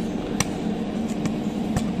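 Steady electrical hum from a capacitor-discharge stud welding machine standing ready, with two light clicks as the welding gun and stud are set down on the steel plate before the discharge.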